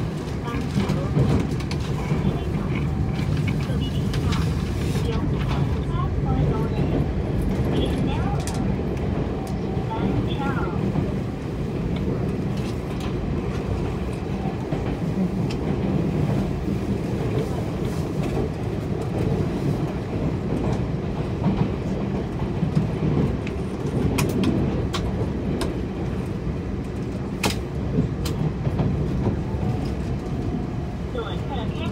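Cabin running noise of a Puyuma Express tilting electric train: a steady low rumble of wheels on rail and traction gear, with scattered light clicks and rattles.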